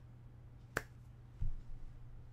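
A single sharp clap of hands coming together a little under a second in, followed about half a second later by a dull low thump, over a steady low hum.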